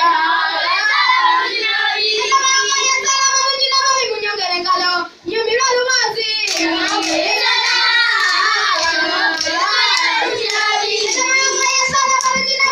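A group of children singing together, a lead voice among them, with a short break about five seconds in. Sharp percussive hits join in during the second half.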